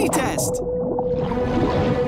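Cartoon soundtrack: squealing, pitch-gliding cartoon voices in the first half second, then background music with a long held note.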